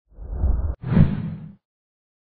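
Two whoosh sound effects of a logo intro: a low swell that cuts off abruptly just under a second in, then a brighter whoosh that fades away by about a second and a half.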